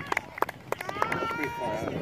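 Voices shouting and calling out across an outdoor soccer field, with a couple of drawn-out calls in the second half, and a few sharp smacks in the first second.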